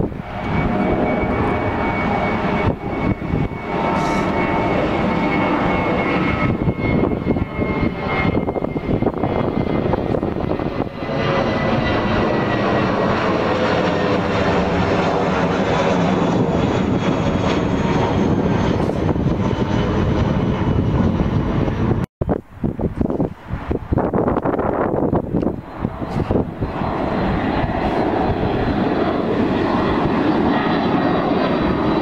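Engines of twin-engine jet airliners climbing out overhead after takeoff: a loud, steady roar with a whine that slowly falls in pitch as the plane passes. About three-quarters of the way through, the sound drops out for an instant at an edit, and another jet's engine noise takes over.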